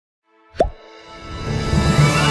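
Channel intro: a sharp hit with a fast falling pitch about half a second in, then intro music swelling louder with held tones.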